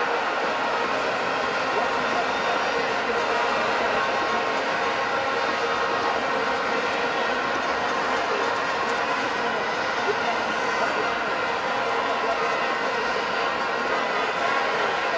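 Steady din of a large stadium crowd, an even wash of many voices and noise with no single standout event.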